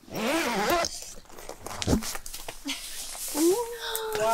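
Wordless voices: a wavering vocal exclamation in the first second, then a long drawn-out 'oh' near the end, with scattered rustling and clicks between.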